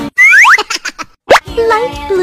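Cartoon sound effects: two quick rising whistle-like glides, then a run of short plops, a brief pause, and one sharp rising zip. Children's music comes back in near the end.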